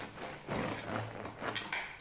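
Serrated bread knife sawing through the crust of a round wholemeal sourdough loaf on a wooden board, in a few strokes.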